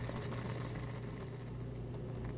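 Blueberry jam boiling in a small pot, a faint bubbling over a steady low hum.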